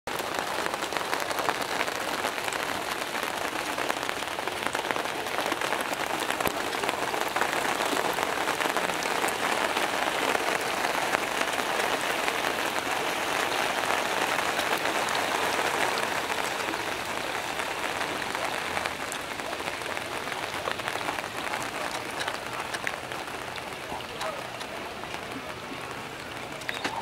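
Heavy rain shower falling on a pond's surface: a steady hiss of rain with scattered sharp drop ticks, heaviest in the middle and easing a little toward the end.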